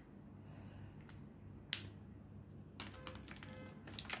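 Faint scattered clicks and taps of plastic brush pens being handled at their plastic case. The loudest comes about two seconds in, and a quicker run of small clicks follows near the end.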